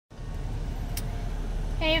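Steady low rumble of a car heard from inside its cabin, with a brief click about a second in. A woman's voice starts speaking near the end.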